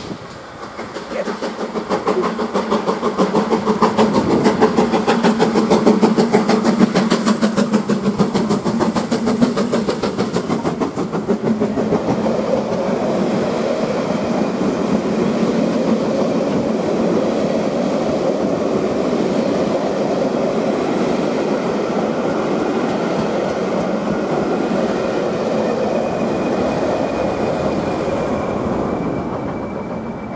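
GWR Castle class 4-6-0 steam locomotive 7029 Clun Castle working hard with the regulator open: a rapid, loud run of exhaust beats for about the first ten seconds. Then the coaches roll past with a steady clickety-clack, and a diesel locomotive on the rear passes near the end.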